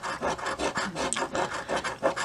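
A 1-ounce silver bullion coin scraping the coating off a scratch-off lottery ticket, in quick, even back-and-forth strokes.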